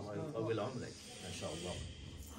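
Faint voices with a soft hiss, in a lull between loud passages of Quran recitation.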